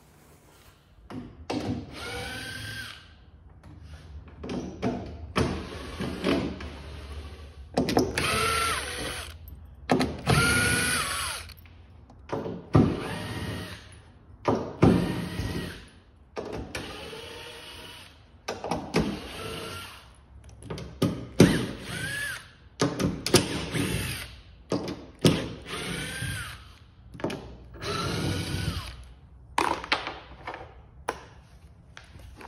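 Power drill backing temporary screws out of cedar strip planking, in a run of short whines, one every second or two, each rising and then falling in pitch.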